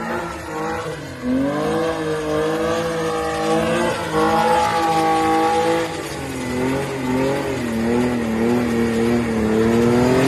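BMW E36 engine revving up and down hard as the car drifts in circles, its rear tyres spinning and squealing on the tarmac.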